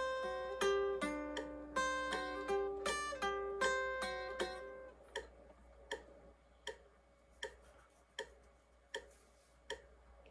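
Semi-hollow electric guitar playing a slow single-note lead line that stops about five seconds in. A metronome clicks steadily underneath, about four clicks every three seconds, and it is left on its own once the guitar stops.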